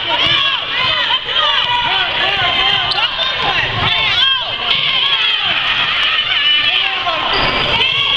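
Basketball shoes squeaking on a hardwood gym floor, many short high squeals overlapping, with the ball bouncing and players' running footfalls thudding underneath.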